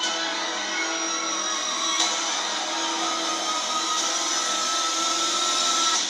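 Dramatic trailer music, a dense sustained swell of many held tones that grows slightly louder toward the end, heard through a TV's speaker.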